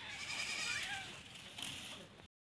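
A goat bleating: one long wavering call that fades after about a second.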